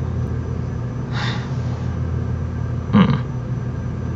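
Steady low hum in the recording, with a soft breath-like hiss about a second in and a brief murmur of a man's voice near three seconds.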